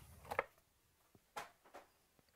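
Foil trading-card packs crinkling as they are handled and set down on a stack, in a few short bursts: the loudest just under half a second in, two briefer ones past the middle.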